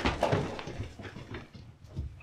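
Several people hurrying across an office floor: quick, uneven footsteps and shuffling, with a sharp knock at the start.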